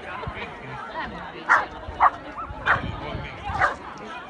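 A dog barking, four short barks spaced roughly half a second to a second apart, over background voices.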